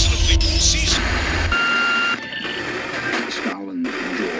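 TV sports broadcast intro music with heavy bass that drops out about a second and a half in. A steady electronic beep tone follows for about half a second, then mixed broadcast sound.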